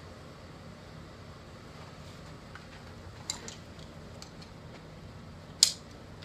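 A few faint clinks and taps of gear being handled and carried, over a steady room hiss, then one sharp loud click near the end.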